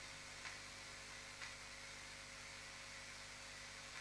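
Very faint steady electrical hum and hiss, with two tiny ticks, about half a second and a second and a half in: a pause between phrases of studio speech.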